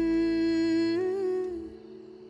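A single voice holding one long sung note of a slow, sad Hindi song over soft background music, with a short wavering turn about a second in before the note fades away.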